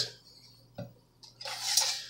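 Kitchen utensils being handled on a counter: one light click, then a brief scraping rustle in the second half.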